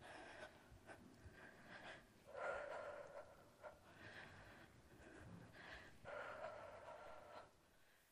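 Faint, hard breathing of a woman exercising: a few audible breaths, with the clearest ones a couple of seconds in and again near the end.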